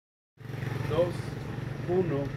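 A steady low engine hum from a running motor begins about half a second in, with a faint voice over it.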